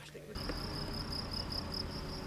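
A cricket's high, steady trill, pulsing quickly, begins about a third of a second in over a low background rumble.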